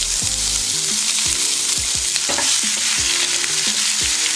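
Chopped onion sizzling steadily in hot oil in a nonstick pan, stirred with a spatula that strokes and scrapes the pan again and again.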